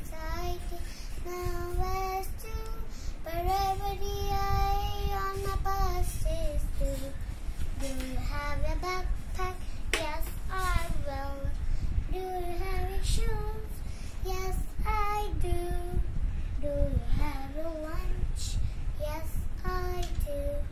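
A young girl singing a poem as a song, unaccompanied, in a child's high voice, with a few long held notes early in the verse.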